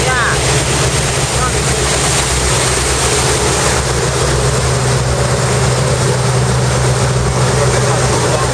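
A boat's engine running steadily under way, a constant low hum, with a rush of wind and wake water over it.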